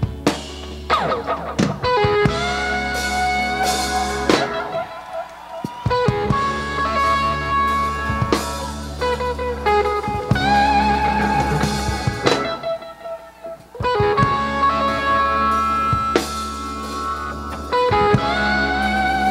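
A live rock band playing an instrumental, with a lead electric guitar holding long bending notes with vibrato over drums and bass. The band drops back briefly a little past the middle, then comes back in.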